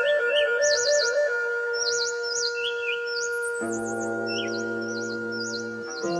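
Birds chirping in short, repeated high trills over soft background music of long held notes; deeper notes join the chord about three and a half seconds in.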